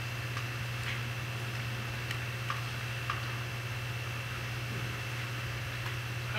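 Room tone of a meeting hall picked up through the podium microphone: a steady low hum with a faint high-pitched whine, and a few faint ticks scattered through the first half.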